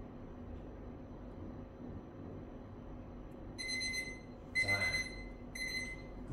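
Workout interval timer beeping three times in the last couple of seconds, a high steady electronic tone: the signal that the timed stretch hold is over. Before the beeps there is only a low steady room hum.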